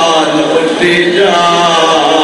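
A man chanting a melodic recitation into a microphone in long, held notes. About a second in, his voice climbs higher and falls back.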